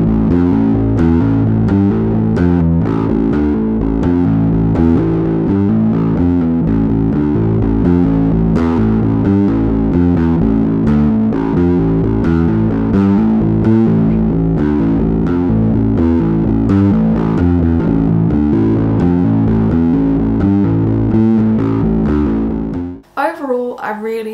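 Spector Euro 5LE five-string bass guitar played through a GoliathFX IceDrive bass overdrive pedal, with drive, warp and blend all the way up and the tone and mid controls all the way down: a heavily distorted, driving bass riff. It stops abruptly about a second before the end, and a woman starts talking.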